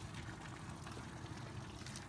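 Water trickling and dripping off the roots of a clump of water hyacinth held up over a plastic bucket, a steady light trickle.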